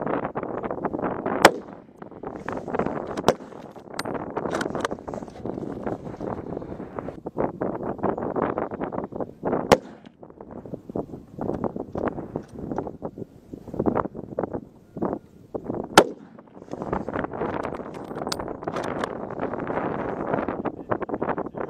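Rifle shots, several sharp cracks: the loudest about a second and a half in, near ten seconds and at sixteen seconds, with fainter shots between. Strong wind buffets the microphone throughout.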